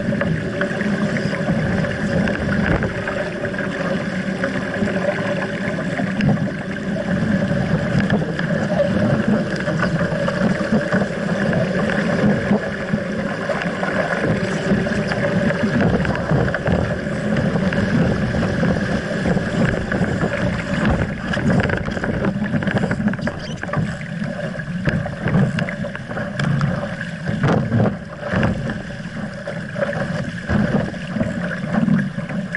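Water rushing along the hull of an RS Aero sailing dinghy moving fast through waves, with wind on the microphone. Short slaps and spray hits come through in the last few seconds.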